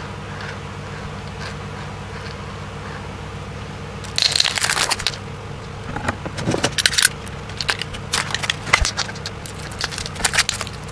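Aluminium foil crinkling and a dried hot-glue shell crackling as the shell is worked off a foil-wrapped can. It comes in irregular bursts of crackles from about four seconds in, over a steady low hum.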